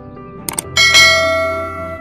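Background music, with a quick double click about half a second in, then a bright bell chime that rings out and slowly fades before being cut off abruptly.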